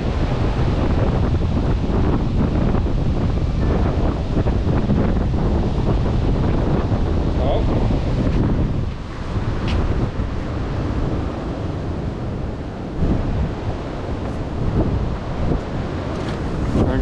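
Strong wind buffeting the microphone, a heavy rumbling rush that eases a little about nine seconds in.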